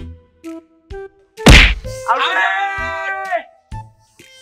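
A single loud whack about a second and a half in, followed by a drawn-out pitched sound effect that bends down in pitch as it ends; a few short separate tones come before the whack.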